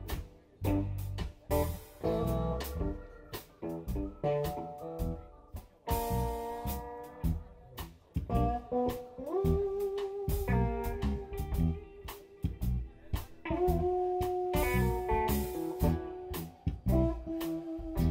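Live blues band with drums, electric bass and a slide guitar played flat on the lap, in an instrumental passage. About halfway through, and again near the end, the slide guitar glides up into long held notes over the drum beat, the first one with a wavering vibrato.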